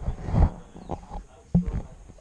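Close rustling with two dull thumps, the louder about half a second in and a sharper one a little past one and a half seconds, as a child moves on sofa cushions right beside the camera.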